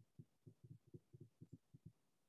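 Near silence, with an irregular run of about a dozen faint, soft low taps.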